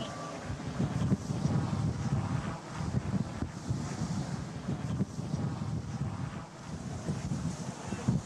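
Wind buffeting a handheld camera's microphone outdoors: an uneven low rumble that rises and falls.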